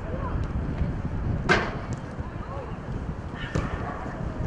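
Outdoor football-match sound: wind rumbling on the microphone and faint shouts from players. A sharp knock, the loudest sound, comes about a second and a half in, and a smaller one comes shortly before the end.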